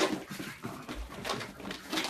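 A pug's breathing and small vocal noises as it runs around, coming in irregular short bursts a few times a second, with a low thud about a second in.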